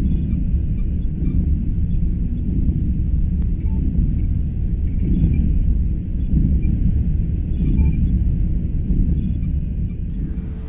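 A deep, steady rumbling hum with a slow throb and faint high whines above it: a starship warp-core engine sound effect laid over the footage. The model itself makes no noise.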